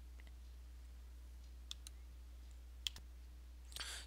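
Two sharp clicks of keys on a computer keyboard, about a second apart, with a few fainter ticks before them, over a faint steady low hum.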